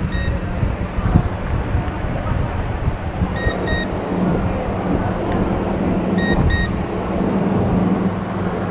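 Homemade ice-bucket cooler's microwave-oven fan motor running with a steady low hum. A handheld infrared thermometer gives pairs of short high beeps three times, near the start, about three and a half seconds in and about six seconds in, as temperature readings are taken.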